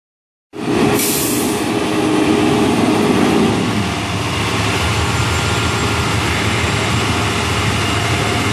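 Large emergency vehicles' engines idling, a steady low rumble, with a short hiss about a second in.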